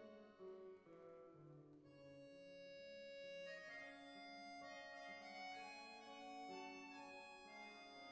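Small chamber ensemble of flute, violin, accordion and guitar playing a soft, slow passage of held notes over sustained accordion chords.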